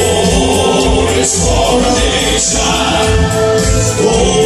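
Male southern gospel quartet singing in close four-part harmony, holding long notes, over instrumental accompaniment.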